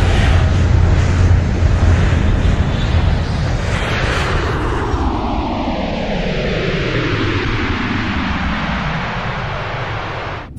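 Sound effect of a flying car's engine taking off: a loud jet-like roar with a heavy low rumble, its pitch falling steadily through the second half as it eases off slightly.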